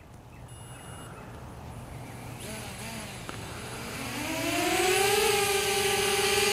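DJI Spark mini quadcopter's propellers spinning up for a palm launch off the hand. A hiss builds about two seconds in, then a whine climbs in pitch and settles into a steady hovering buzz as the drone lifts off.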